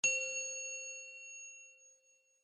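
A single bell-like ding sound effect for an animated title logo: one metallic strike that rings on and fades away over about two seconds.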